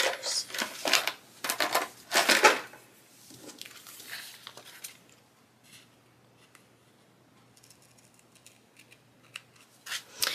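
Small scissors snipping through paper and washi tape to trim it at a planner page's edge, mixed with paper handling. Several loud, short snips come in the first two and a half seconds, then only faint clicks.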